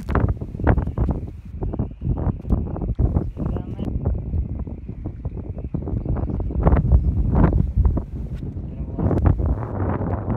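Wind buffeting the camera microphone in a heavy, uneven rumble, with many sharp knocks and rubs as the camera is moved about.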